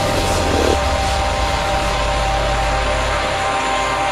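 Supermoto motorcycle engine running at a steady speed with a steady drone, its low rumble fading near the end.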